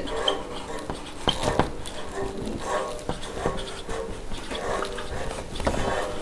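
Marker writing on a whiteboard: a run of faint strokes with brief squeaks.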